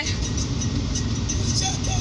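Steady low rumble inside a car's cabin, with no sudden events.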